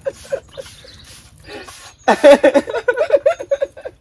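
Women laughing: a few short giggles at the start, then a longer bout of laughter from about two seconds in.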